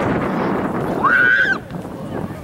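A high-pitched yell from a child or spectator on the sideline, starting about a second in with a quick rise, held on one note for about half a second, then cut off. It sits over a steady noisy background from the open field.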